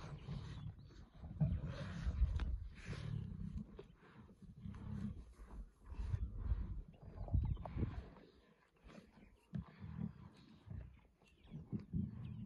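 Lionesses growling as they feed together on a warthog kill, in irregular short low rumbles.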